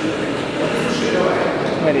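Speech: people talking in a large hall, with a man saying a short word near the end.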